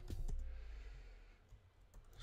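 A person breathing out for about a second, softly, with a few computer keyboard keystrokes clicking around it.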